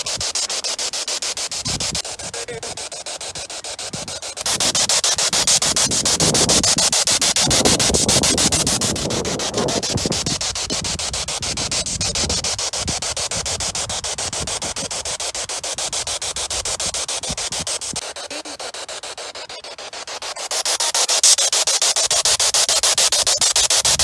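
Spirit box sweeping through radio stations: a loud hiss of static chopped by rapid, even ticks of the scan, with brief snatches of broadcast sound in the middle.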